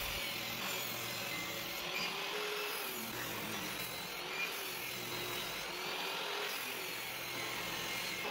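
Table saw ripping a 2x6 lengthwise into a 1-inch strip. The blade runs through the cut steadily, with a slightly wavering pitch as the board is fed past it.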